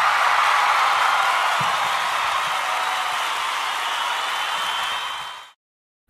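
A steady, even rushing noise with no pitch, like a sound effect laid under a title card. It eases slightly and cuts off about five and a half seconds in.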